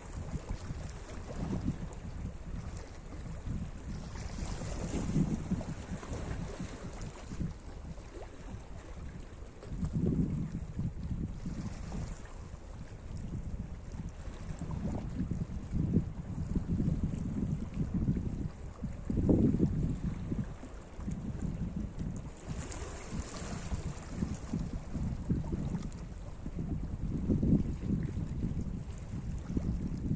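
Small sea waves lapping and washing over a rocky shoreline, mixed with wind rumbling on the microphone. The noise swells and eases irregularly, with a couple of brighter, hissing washes.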